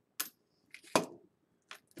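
Pennies being handled and set down on a hard surface: a sharp click about a quarter second in, then a louder clink about a second in.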